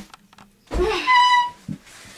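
A wooden closet door swinging open on a creaking hinge, the creak turning into a held high squeak for about half a second.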